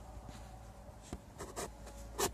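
Faint handling noise from a handheld phone being moved: soft rubbing with a few brief scratchy clicks in the second half.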